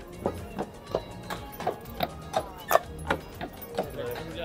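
Shod hooves of a draft horse pulling a horse-drawn streetcar, clip-clopping at a walk on paving stones in an even rhythm of about three steps a second.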